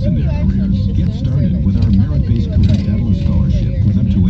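Steady low rumble of a car driving, heard from inside the cabin, with indistinct talk underneath.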